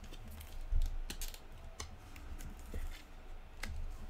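Irregular light clicks and scrapes of plastic as a trading card is worked into a clear plastic card holder, with a few soft low thuds of handling.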